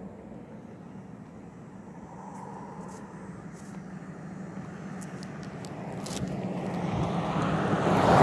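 A passing road vehicle approaching, its steady hum growing louder over the last few seconds.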